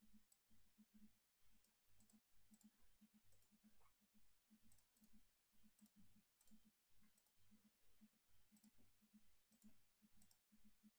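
Very faint clicking from a computer mouse and keyboard, several small clicks a second, scattered unevenly.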